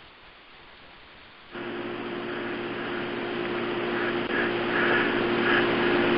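Steady hiss with a low hum on a conference-call line, starting suddenly about a second and a half in and slowly growing louder, as when a caller's open microphone comes on.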